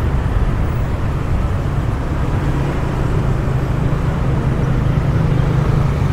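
Steady street traffic: a continuous low hum of motorbike and car engines on the road.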